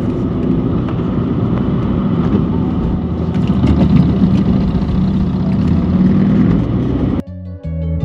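Steady engine hum and tyre-and-road rumble inside a car's cabin as it drives along a highway. About seven seconds in, this cuts off suddenly and background music starts.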